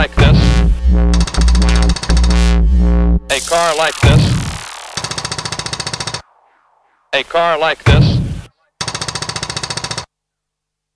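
Cut-up electronic breakbeat music: heavy bass-driven beats, then a falling sweep and a run of rapid stuttering bursts that stops dead, a brief silence, a snatch of sampled voice, and another burst of rapid pulses that cuts off abruptly.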